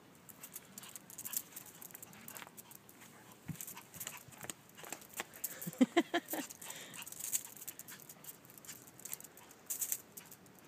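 A chihuahua gives a quick run of short, high yips about six seconds in while playing with a plush toy. Scattered light clicks and scuffles of the play on paving sound around it.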